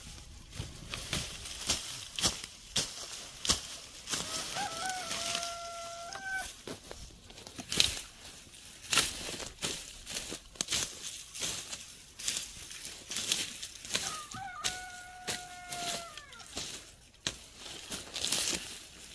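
Repeated short, sharp knocks and scrapes of hand work in brush and soil, with a rooster crowing twice, about four seconds in and again about fourteen seconds in.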